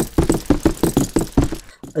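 Running footsteps sound effect: a fast, even run of thudding steps, about six a second, of more than one runner, stopping shortly before the end.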